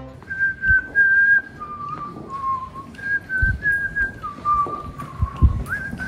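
A person whistling a simple tune in long held notes that step between a higher and a lower pitch, with a few soft low thumps underneath.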